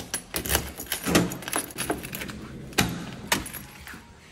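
A bunch of keys jangling on a key ring while a key is worked in a door's cylinder lock, with a series of sharp metallic clicks.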